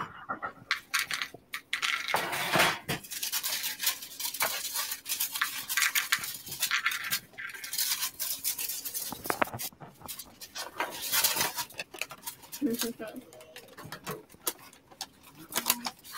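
Irregular crinkling and rustling with light clicks and clinks, from packaging and utensils being handled while baking.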